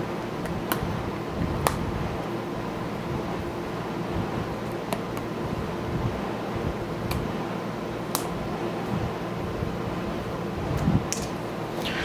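Steady room background noise with a low hum, like a fan or air conditioner running, broken by a few faint, scattered clicks.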